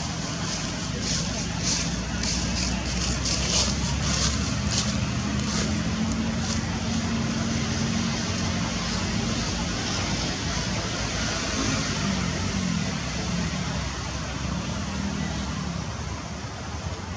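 Steady background noise with a low motor-vehicle engine drone that wavers in pitch, and a run of short hissing sounds over the first five seconds.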